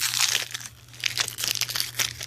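Yu-Gi-Oh card pack wrapper crinkling and crackling in the hand as it is worked open one-handed, with a brief lull just before the middle.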